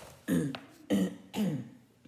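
A woman clearing her throat with three short coughs about half a second apart, each falling in pitch.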